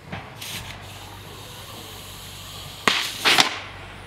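A compressed-air water bottle rocket launching: a sharp pop as the cork blows out of the pressurised bottle, about three quarters of the way in, followed at once by a short hiss of air and water spraying out.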